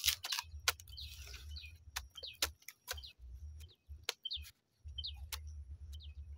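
A machete cutting the roots off a banana sucker's corm: a run of short, sharp, irregular cuts. Short bird chirps come in now and then.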